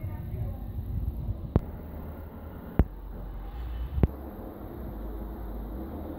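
Low steady rumble on a moving phone microphone outdoors, broken by three sharp clicks a little over a second apart.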